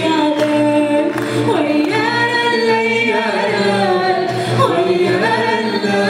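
A woman singing izran, Amazigh sung verses, unaccompanied, with long held notes that slide in pitch, over a low steady tone.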